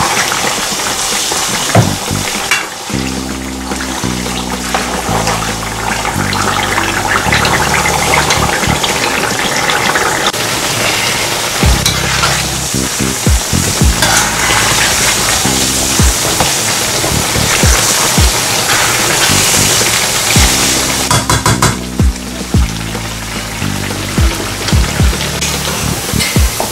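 Chunks of ripe plantain with pepper, ginger and garlic deep frying in hot oil in a wok, a steady dense sizzle, with the slotted spoon knocking and scraping against the pan now and then as the pieces are stirred to keep them from burning.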